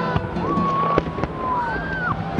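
Fireworks going off, with a few sharp cracks from bursting shells. Music with long, bending held notes plays along with them.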